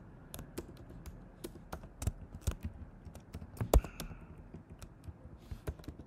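Keys being typed on a computer keyboard in irregular short runs of clicks, with one louder keystroke a little past halfway.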